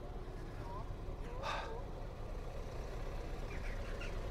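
Steady low outdoor rumble, with one short harsh bird call about one and a half seconds in.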